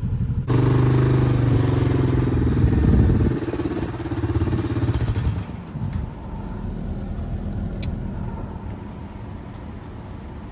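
A motor vehicle engine comes in abruptly about half a second in, running high with a strong pitched hum. After about three seconds it drops back, easing down to a lower, steady running sound.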